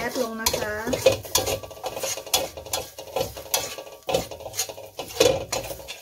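A metal spatula scraping and knocking against a metal wok in repeated stirring strokes, about two to three a second, as shredded enoki mushrooms are dry-roasted without water.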